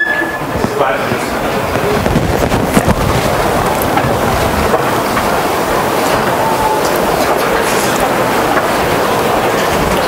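Audience chatter: many people talking at once in a steady babble, with a brief high tone at the very start.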